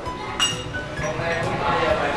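A single clink of porcelain teaware, ringing briefly, a little under half a second in, over background voices.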